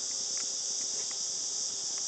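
Steady high-pitched shrill of crickets, with a few faint ticks.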